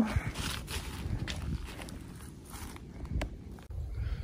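Footsteps through dry fallen leaves on a forest floor, irregular and soft, with low rumble of wind or handling on the microphone.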